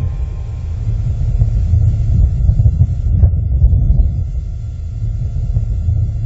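A loud, deep rumble, steady with slight swells, sitting almost entirely in the low end.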